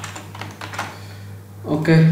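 Computer keyboard typing: a quick run of separate key clicks that thins out about a second and a half in.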